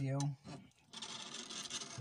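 Handling noise: a steady rubbing rasp lasting about a second in the second half, after a single spoken word.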